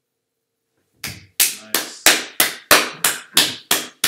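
Slow, even hand clapping, about three claps a second, starting about a second in.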